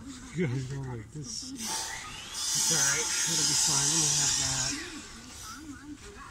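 Voices talking, with a steady high hiss lasting about two and a half seconds in the middle.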